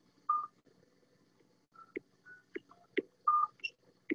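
Short electronic beeps at a few different pitches and light clicks from a tablet as a patient taps and scrolls through a communication app, irregularly spaced: one beep just after the start, then a run of clicks and beeps through the second half.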